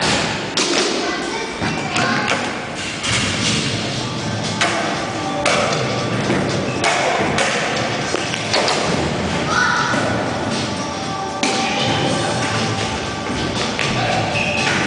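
Repeated thuds and taps of skateboards landing and rolling on wooden ramps, over music and voices.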